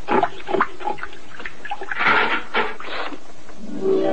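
Cartoon pig grunts, a quick run of short grunts and squeals in the first three seconds. Music with held notes comes in just before the end.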